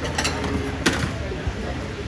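Porcelain bowls and a metal ladle clinking as noodle bowls are handled at a stall counter, with one sharp clink a little under a second in, over a steady low hum.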